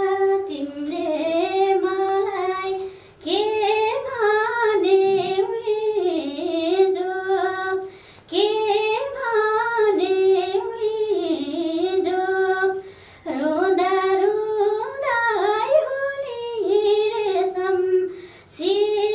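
A woman singing a song unaccompanied, in a full, ornamented voice. She sings in four phrases with short pauses for breath between them.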